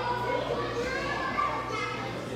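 Overlapping children's voices and chatter in a large gym hall, with a low steady hum underneath.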